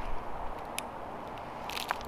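A steady, quiet outdoor background hiss, with light handling noise from a paracord gear hanger being worked at the tree trunk. There is a single click a little under a second in, and a few more light clicks near the end.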